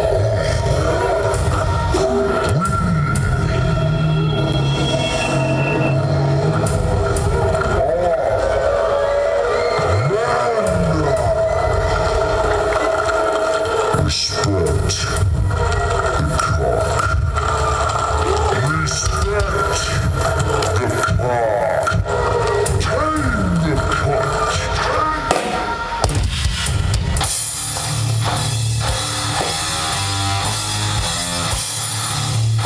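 Death metal band playing live through a PA: sustained, droning guitar tones with drums and bending pitch glides, then a denser wall of distorted guitar and drums coming in near the end.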